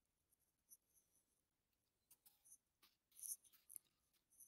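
Near silence, with a few faint, brief scratchy sounds, the loudest a little past three seconds in.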